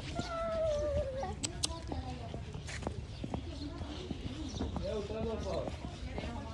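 A child's voice giving a high, drawn-out call that falls in pitch for about a second at the start, then indistinct children's chatter later on, with scattered light clicks.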